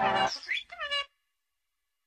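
A cat meowing twice in short, falling cries as an instrumental beat fades out; the second cry ends sharply about a second in.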